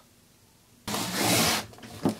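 Hands moving the battery cable and its plastic connector across a tabletop: a short rubbing, scraping noise that starts almost a second in, after dead silence, and lasts under a second before fading to light handling sounds.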